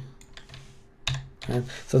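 A few keystrokes on a computer keyboard as a selected block of code is commented out in a text editor.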